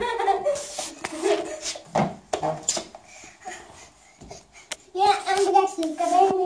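A child's voice chanting 'evet' at the start and again near the end, with scattered short knocks and bumps in between.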